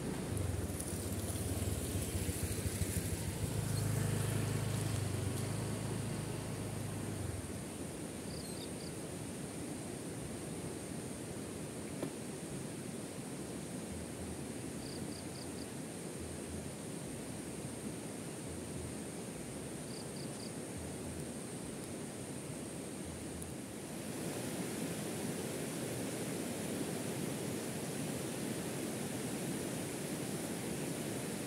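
A motorcycle rides past on a gravel track, its engine loud for the first several seconds and then fading out. After that a steady outdoor hiss remains, with a few brief high chirps, and from about 24 seconds in the louder, steady rush of a fast-flowing river.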